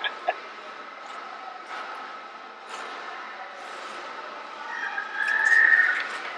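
Bench scrapers scraping on a marble slab as candy-studded dough is folded, a few scrapes about a second apart, over a steady high-pitched hum. About five seconds in, a high squeal rising slightly in pitch lasts about a second and is the loudest sound.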